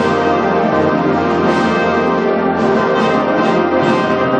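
Concert wind band playing loud, held chords, with flutes and brass sounding together.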